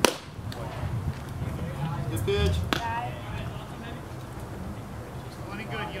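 A sharp pop of a pitched baseball hitting the catcher's leather mitt, with a second, thinner crack about three seconds later and faint voices from the field.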